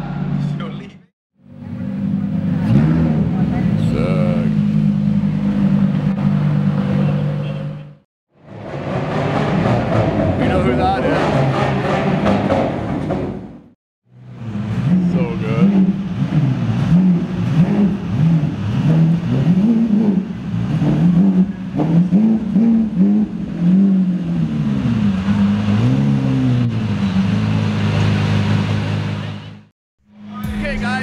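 Supercar engines idling and revving in a series of short clips cut abruptly one after another. In the longest clip, a Lamborghini Aventador's V12 is blipped again and again, its pitch rising and falling about a dozen times.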